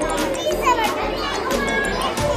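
Children's voices in a busy room over background music with a steady beat.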